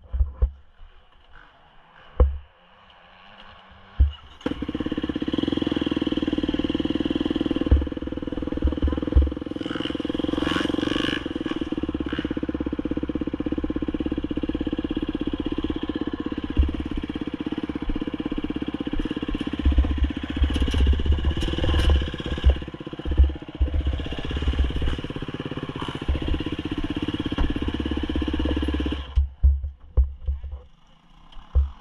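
An engine running steadily at an even speed. It comes in suddenly about four seconds in and cuts off about a second before the end, with knocks and low thumps from handling throughout.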